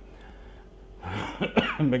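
A man clears his throat with a cough about a second in, after a second of quiet room noise.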